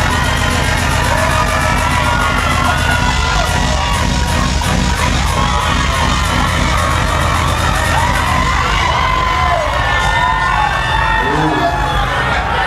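Loud dancehall music with a heavy bass and a fast ticking beat, under a crowd cheering, whooping and shrieking. The ticking drops out about eight seconds in while the bass and the cheering go on.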